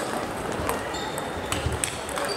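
Table tennis balls clicking sharply and irregularly off tables and bats at nearby tables, over the steady background hum of a busy sports hall.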